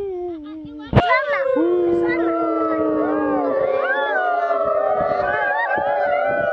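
Many children's voices holding long drawn-out cries together, several pitches overlapping and wavering for seconds at a time. A sharp click comes about a second in.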